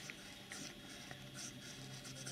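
Faint scratching of a Diplomat Classic fountain pen's broad steel nib moving over paper as a word is written in cursive. The nib is pressed to squeeze out line variation.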